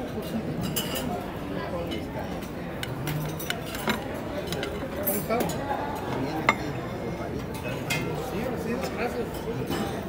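Diners chattering in the background while dishes and cutlery clink irregularly, with one sharper clink about six and a half seconds in.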